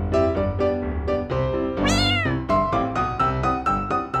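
Light piano background music with a single cat meow about halfway through, rising then falling in pitch.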